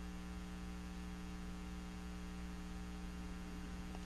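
Steady electrical mains hum in the recording, a low buzz of several even tones with a faint hiss under it.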